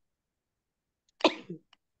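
Silence, then about a second in a single short, sharp burst of breath and voice from one person, followed by a fainter puff.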